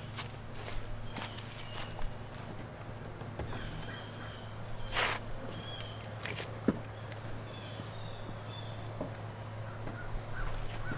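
A tri-fold foam mattress being folded up in a car's cargo area: soft rustling and scuffing of fabric and foam, with a few light knocks, the sharpest about five seconds in and just before seven seconds.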